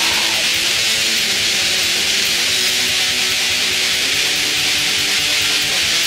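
Raw, lo-fi black metal: a dense wall of distorted electric guitar, bright and hissy, at an unbroken steady level.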